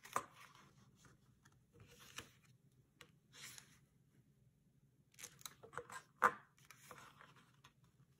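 Scored cardstock being folded and creased with a bone folder: soft, scattered paper rustles and scrapes, then a run of crisper crackles and clicks about five to six seconds in, the loudest just after six seconds.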